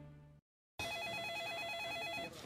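The last of a music theme fades out and cuts to a moment of silence. Then an electronic telephone ringer starts trilling in a fast warble: an incoming call.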